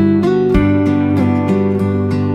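Background instrumental music with plucked-string notes in a steady rhythm.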